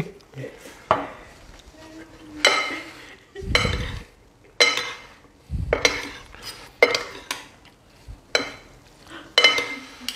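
Metal serving utensils scraping and clinking against a ceramic bowl as a farfalle pasta salad is tossed, in strokes about once a second, with a couple of duller knocks.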